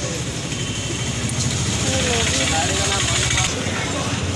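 A motor vehicle engine running steadily nearby, a low rumble with an even flutter, with faint voices talking in the background.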